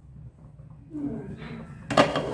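A glass cooking-pot lid with a steel rim is set onto a metal pan, giving one sharp clink near the end. Before it there is a quiet stretch, then faint speech.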